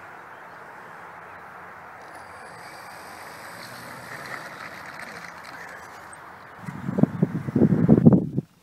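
Steady outdoor background hiss, then loud irregular buffeting of wind on the microphone for about the last second and a half.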